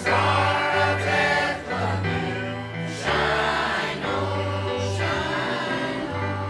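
Mixed church choir of men and women singing together with instrumental accompaniment, held notes moving from phrase to phrase.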